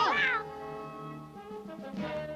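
High-pitched cartoon voices laughing and squealing, cutting off about half a second in, followed by soft background music of held notes.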